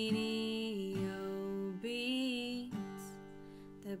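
Music: a woman singing slow, long-held notes over a strummed acoustic guitar.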